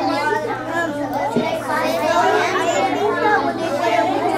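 Overlapping chatter of many children talking at once, with no single voice standing out. A low steady hum runs underneath, and there is one short click about a second and a half in.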